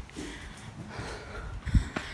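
Rustling and low bumps from a phone being carried while walking, with one heavier low thump about three-quarters of the way through.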